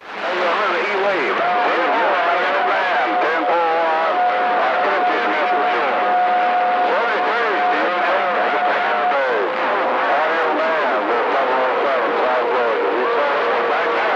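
CB radio receiver audio from a crowded channel with the band open to distant stations: steady static with garbled, overlapping sideband voices and warbling whistles. A steady whistle of an off-frequency carrier holds for several seconds, then a lower one sounds near the end.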